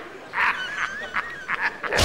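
Two men laughing hard in short, high-pitched bursts.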